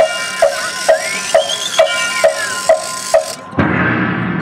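Opening of a marching band show: regular clock-like ticks, a little over two a second, each with a short pitched knock, over a held chord and a slow eerie gliding tone that rises and then falls. Near the end the ticking stops and a fuller ensemble sound comes in.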